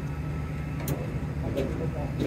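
Steady low hum of a parked airliner and its apron equipment, with a couple of sharp clicks about one and one and a half seconds in.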